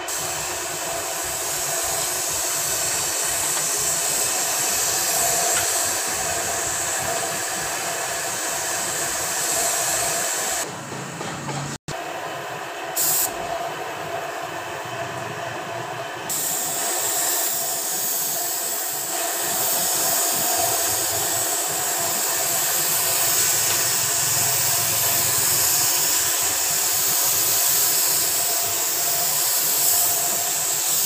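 Compressed-air gravity-feed spray gun spraying paint onto a car's front bumper and fender: a steady, loud hiss of atomising air that thins for a few seconds around the middle.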